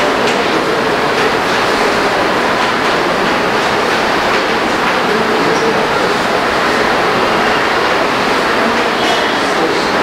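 Steady, loud background noise with no break, and over it faint scratches and taps of chalk writing on a blackboard.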